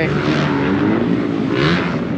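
Motocross dirt bike engines running at the track, a steady engine drone.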